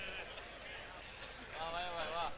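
A man's high-pitched, wavering laugh into a stage microphone near the end, after a quieter stretch.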